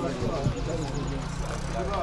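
Several people talking at once in the background, overlapping voices, over a low steady hum that sets in about half a second in.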